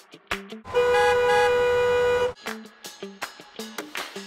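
Background music with a steady, rhythmic beat. A loud vehicle horn sounds over it, held as one steady blast for about a second and a half, starting just under a second in.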